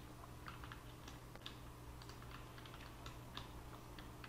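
Faint, irregular clicks from a computer keyboard and mouse being worked at the desk, over a low steady hum.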